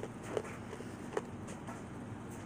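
A few short ice crunches, two clear ones about a second apart, from ice being chewed in the mouth, over a low steady hum.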